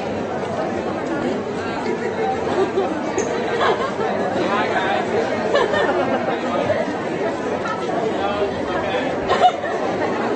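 Indistinct chatter of many voices filling a large hall, steady throughout, with a brief knock near the end.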